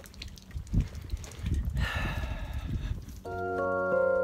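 Low rumbling handling and wind noise with a raspy duck call about two seconds in, lasting about a second; soft background music begins about three seconds in.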